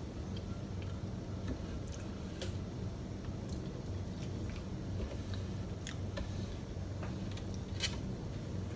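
A person chewing and eating potato wedges, with scattered short mouth clicks, over a steady low hum.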